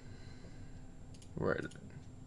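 A few faint computer mouse clicks as menus are opened on screen, with a short hummed voice sound about a second and a half in.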